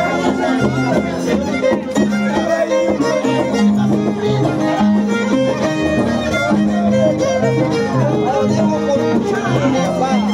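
Harp and violin playing a jarana, the violin carrying the melody over the harp's steady, pulsing bass notes.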